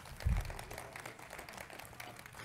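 Microphone handling noise: a low thump about a third of a second in, then rustling and small clicks as a microphone at the lectern is handled and set up on the speaker.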